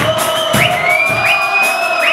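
Loud dance music with a steady beat of about two strokes a second, with a packed crowd cheering and singing along.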